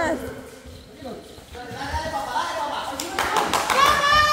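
Voices of a group of people playing football, calling out and chattering, fainter around the first second and louder over the last two seconds, with one sharp knock about three seconds in.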